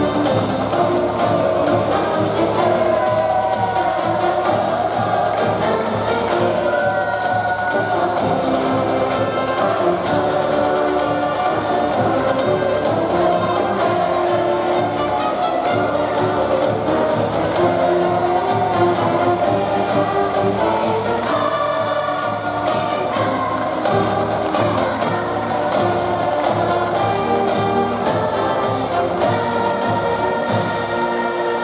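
Upbeat music from a university cheer squad's band, accompanying a cheerleading dance routine, with singing or chanting voices in it.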